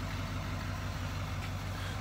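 Vehicle engine idling: a steady low hum with no change in speed.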